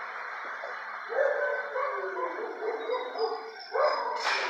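Dogs barking and yelping in a run of calls starting about a second in, over a steady background noise.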